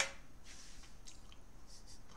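A man's mouth noises between words: a sharp lip click at the start, then a few faint mouth clicks over quiet room tone.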